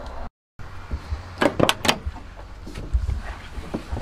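Several sharp clicks and knocks over a low rumble, from someone moving about inside a pickup truck's cab. A quick cluster of three or four clicks comes about a second and a half in, with single knocks later. The sound cuts out briefly near the start.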